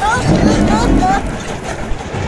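Cartoon character voices making several short, rising, wordless vocal sounds, heard over a loud, noisy background.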